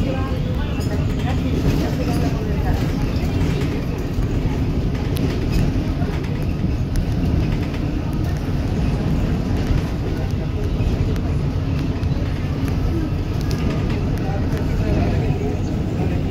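Inside a Volvo B290R city bus under way: a steady low rumble of engine and road, with short clicks and rattles from the body.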